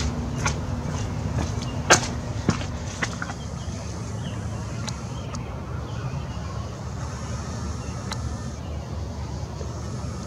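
Handling noise from a camera on a tripod: a few sharp clicks and knocks in the first three seconds, the loudest about two seconds in. After that comes a steady low background rumble with a faint thin high whine, as the superzoom lens zooms and focuses on the moon.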